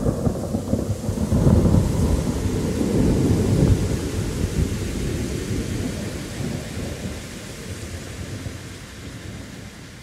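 Thunderstorm sound effect at the end of the song: rolling thunder over steady rain, the rumble heaviest in the first few seconds and the whole thing fading out gradually.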